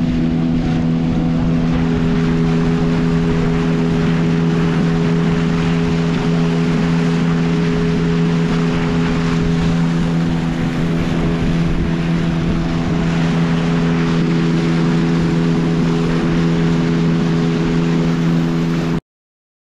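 Outboard motor running at a steady cruising speed, pushing a wooden dugout canoe, with water rushing and spraying along the hull.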